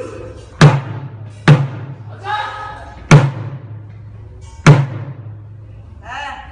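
Korean drums struck together in slow, unevenly spaced unison hits, four loud booming strokes each with a short low ring. A voice calls out briefly between the second and third strokes.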